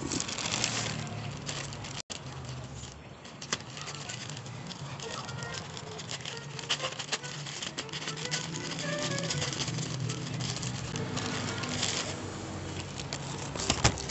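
A plastic courier mailer bag being handled and torn open by hand, with many small crackles and rustles.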